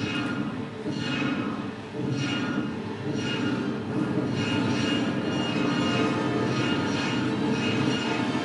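Film soundtrack played back through room speakers: a rhythmic whooshing pulse about once a second over a steady low hum. It is the movie's rendering of a radio signal from outer space picked up by radio telescopes.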